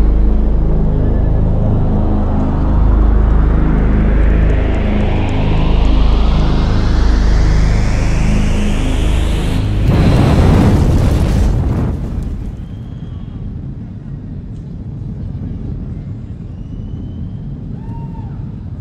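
Electronic show intro through an arena sound system: a deep, loud bass drone under a sweep that rises steadily in pitch for about ten seconds, peaking in a loud boom-like swell that falls away about two seconds later to a quieter rumble.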